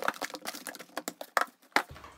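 Dog toys and a bag of treats tipped out of a cardboard box onto a table: a quick run of clattering knocks and rustles, with two sharper knocks in the second half.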